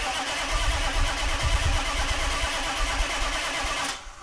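A vehicle engine starting and running with a rough, uneven low rumble under a loud wash of noise; it comes in suddenly and cuts off near the end.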